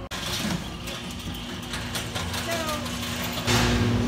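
A steady machinery hum with a constant low tone in a large warehouse, joined by faint distant voices. The hum grows louder about three and a half seconds in.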